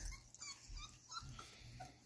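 Faint, short high-pitched whimpers and squeaks from 4½-week-old Bull Terrier puppies, several small cries spread through the two seconds.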